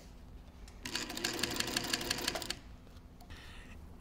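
Sewing machine running in a short burst, stitching through layers of striped upholstery fabric, starting about a second in and stopping about a second later.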